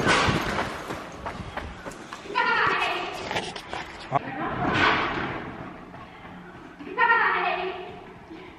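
A sheet of ice sliding off the riding arena's roof, heard from inside as a sudden rushing crash that fades over about two seconds. It spooks a horse, and people cry out a couple of times afterwards amid scuffling thuds.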